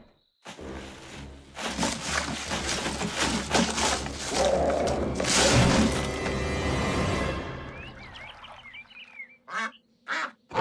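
Cartoon scuffle sound effects: a rumbling, clattering commotion full of knocks and crashes, with a laugh about halfway through, under music. A few duck quacks come near the end.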